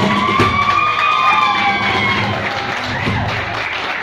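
The closing held sung note of a song over harmonium, with a few cajon strikes early on. The note bends and fades out after about two seconds, and audience applause follows near the end.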